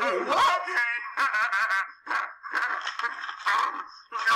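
People laughing in several bursts with short pauses between, mixed with other voice sounds.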